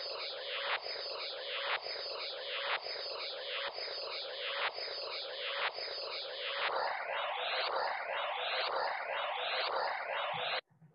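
The vOICe sensory-substitution soundscape: a landscape photograph converted to sound, scanned left to right about once a second, with height heard as pitch and brightness as loudness. It is a dense wash of many simultaneous tones repeating once a second, and about two-thirds of the way through it changes to a different repeating pattern of rising sweeps.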